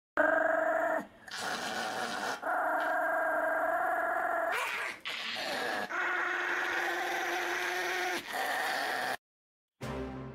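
A Pomeranian howling: a run of long, drawn-out notes, six or seven in a row with short breaks between them, stopping shortly before the end.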